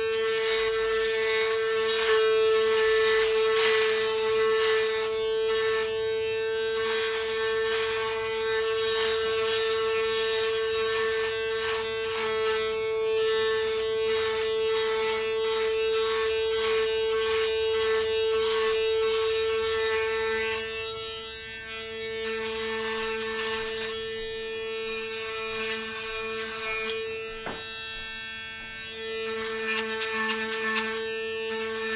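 Electric shaver running with a steady buzz, its pitch dipping slightly now and then as it is pressed to the skin, with a rough crackle as it is worked over stubble on the neck.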